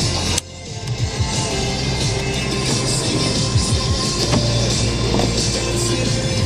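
Music from the car radio playing inside the cabin, with a sharp click about half a second in as the overhead sunroof switch is pressed. The power sunroof slides open under the music.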